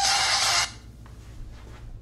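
A male singer holding a long high note over music, cut off abruptly under a second in, leaving only a faint low hum.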